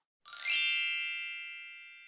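A bright chime sound effect, struck once about a quarter of a second in, with many high notes ringing together and fading away over about two seconds.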